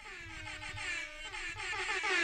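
A sound-effect sample from the edjing Mix app's sampler plays as a held, pitched tone, fading in and growing steadily louder as the sample volume slider is raised.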